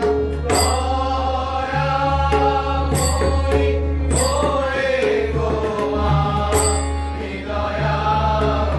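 Bengali Kali kirtan: a group of men singing a devotional chant, with a lead voice and chorus, to a hand drum. Sharp strikes every second or two ring on briefly over the singing.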